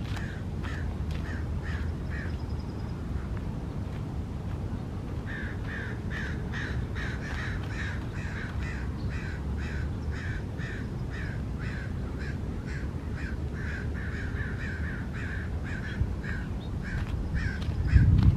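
A bird calling over and over in an even series of short calls, about two or three a second, with a break of about two seconds a few seconds in.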